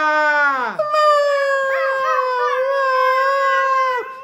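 A person's voice mimicking a pet's whimpering cry: a wail that falls in pitch over the first second, then one long, high whine held with a slight waver.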